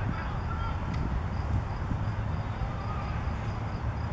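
An insect chirping steadily in short high pulses, about four a second, over a low outdoor rumble, with faint distant voices.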